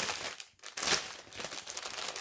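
Plastic packaging of a cross-stitch kit crinkling as it is handled, with a short lull about half a second in.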